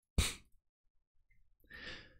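A man's breathing into a close desk microphone between sentences: a brief breath noise just after the start, then a quick intake of breath near the end, with dead silence between.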